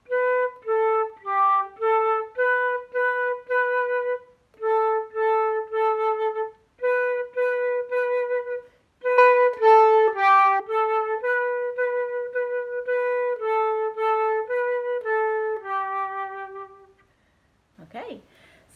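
Concert flute playing a simple tune on just three notes, B, A and G: mostly short, separate notes, quicker for a moment about halfway through, and ending on a longer G.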